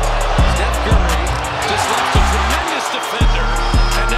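Hip-hop music: a beat with deep bass hits roughly twice a second and rapid hi-hat ticks, with a voice over it in the middle.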